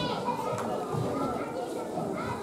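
Many young children's voices chattering and calling out at once, overlapping in a large hall.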